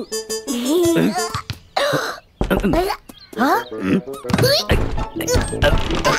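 Cartoon soundtrack: background music under wordless, squeaky character vocalisations and comic sound effects, with a couple of sharp knocks, about two and a half and four and a half seconds in.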